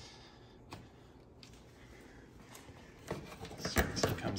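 Plastic radiator mounting clips and shroud being handled: a couple of faint clicks, then a cluster of sharper knocks and clatter near the end as the radiator is worked loose.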